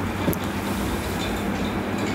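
Steady rushing noise with a low hum and a couple of faint clicks, no voice in it. It is the interference of a faulty audio feed, which the speaker puts down to an incoming phone call.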